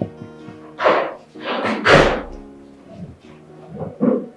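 Soft background film score with steady held notes. Over it come a few short thuds and rustles about one to two seconds in, the loudest about two seconds in.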